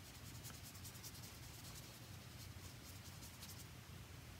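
Faint strokes of a watercolour brush across paper as it wets the sheet with mostly clean water: a quick, irregular run of soft brushing scratches that stops shortly before the end.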